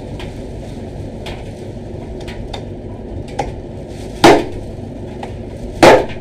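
A large kitchen knife chops into a big whole fish resting on wooden chopping blocks, striking twice hard, about four seconds in and again near the end, with a few faint knife taps before.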